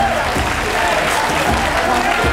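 Audience applauding over loud background music with a steady thumping beat.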